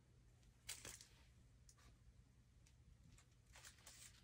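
Near silence, with a few faint clicks and rustles of small plastic toy accessories and packaging being handled, the sharpest about two-thirds of a second in.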